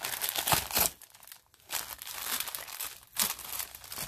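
Clear cellophane bag with shredded plastic filler crinkling as it is handled, in two bouts with a short lull about a second in.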